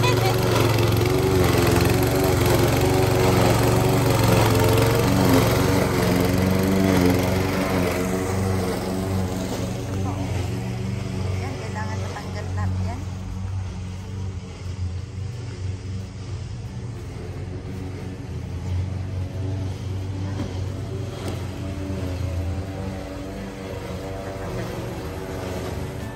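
Walk-behind lawn mower engine running steadily while cutting grass, louder for the first several seconds and then fainter.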